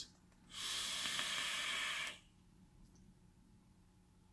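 Vape draw: air hissing through an e-cigarette's rebuildable dripping atomizer in one steady pull of about a second and a half, starting about half a second in.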